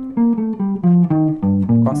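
Hollow-body jazz guitar playing a single-note line, one plucked note after another at about four notes a second, moving mostly in small steps: a chromatic passage building tension before it resolves.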